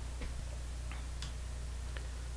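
Steady low electrical hum in the recording, with a few faint ticks.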